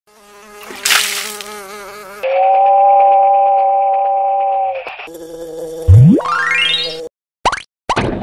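Cartoon sound effects. A buzzing drone wavers in pitch for about two seconds, then holds steady on one pitch for nearly three. About six seconds in, a glide sweeps rapidly upward in pitch, followed by two short blips near the end.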